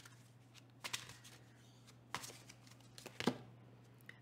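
Tarot deck being shuffled and handled, quiet, with a few light card snaps about a second apart.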